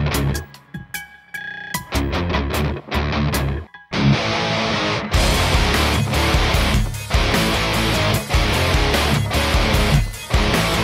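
Black Les Paul-style electric guitar, tuned down to C#, played over the song's backing track: short stop-start hits with silent gaps between them, then the full band with drums and cymbals comes in about four seconds in and the heavy riffing carries on without a break.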